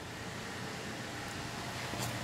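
Steady, fairly quiet outdoor background noise: an even hiss with no distinct events.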